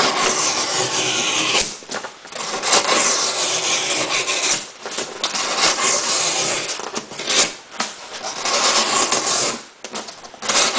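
Knife blade slicing down through a sheet of cardboard in four long strokes, each about two seconds, with short breaks between them. The blade is a Gerber Profile's 420HC steel, slicing with not a lot of effort needed.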